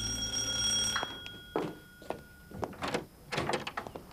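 A bell-like ringing tone that fades out, then a series of sharp clicks and knocks of a house door being unlatched and opened.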